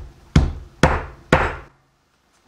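A hammer striking garlic cloves on a wooden cutting board through a paper coffee filter, crushing them: three hard blows about half a second apart, each dying away quickly.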